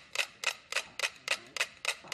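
Ten mechanical pendulum metronomes ticking on a shared swinging platform, about six sharp ticks a second. Most have fallen into step, with one still out of phase and being pushed toward the majority's beat.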